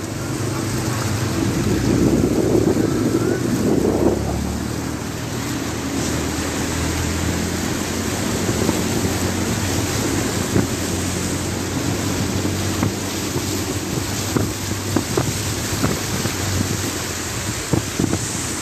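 A car driving slowly through deep floodwater. The engine hums steadily under a continuous rush of water sloshing and splashing around the car, with wind buffeting the microphone. The wash is loudest a few seconds in.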